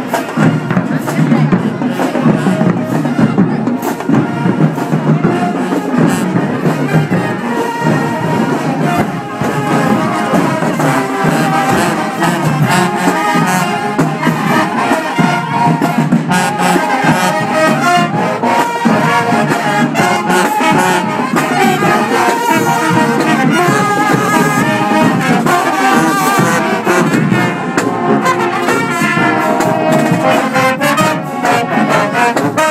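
High school marching band playing: a drumline beat with brass (sousaphones, trombones and trumpets) joining in and playing over it from about eight seconds in.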